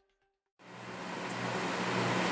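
NewAir G73 electric shop heater's fan running, a steady rush of air over a low electrical hum, fading in from silence about half a second in and growing louder.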